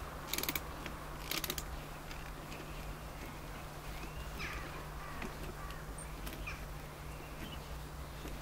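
Hand drill with a spade bit boring into a timber raised-bed board: its gears clatter in short bursts during the first second and a half, then the turning goes on more quietly.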